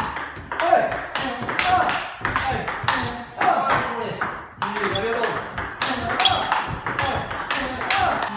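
Table-tennis rally: the ball clicks off rubber-faced rackets and bounces on the table about two to three times a second, in a fast exchange of forehand drives and counter-drives.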